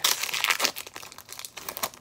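Foil trading-card booster pack wrapper crinkling as it is torn open by hand. It is loudest in the first second, then fades to lighter rustling.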